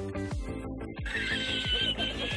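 Background music with a steady kick-drum beat. From about a second in, a man's long, high-pitched, wavering laugh from a laughing-man meme clip is laid over it.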